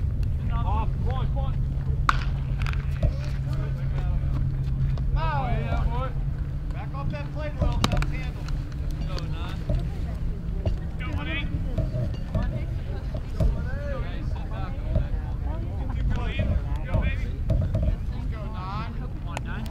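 Spectators' and players' voices calling and chatting at a distance, over a steady rumble of wind on the microphone. A low hum runs through the first half and stops about halfway. Two sharp knocks stand out, one about two seconds in and one near eight seconds.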